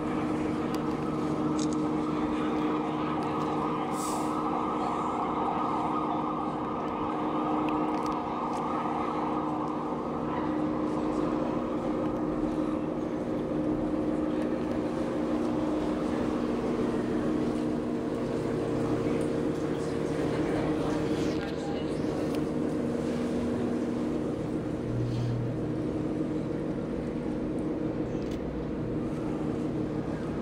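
Canal tour boat's engine running steadily, a drone with several steady pitches. A rushing noise over it is strong at first and fades about ten seconds in.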